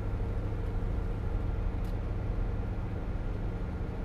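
Steady low rumble of a moving bus heard from inside the passenger cabin: engine and road noise.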